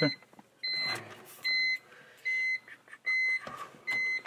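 Car's electronic warning chime: a steady high beep repeating about every 0.8 seconds, five times, with faint handling noise between the beeps.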